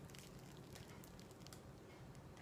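Near silence, with faint crinkling of a clear plastic bag as a soft foam panda squishy is squeezed inside it.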